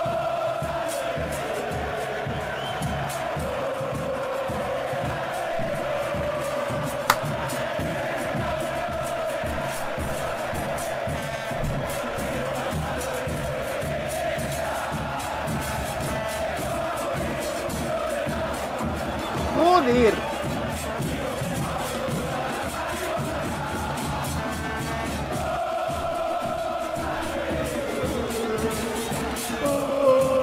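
Argentine football barra chanting a song in unison, a large crowd of voices over a steady drum beat. A brief, louder rising cry stands out about two-thirds of the way through.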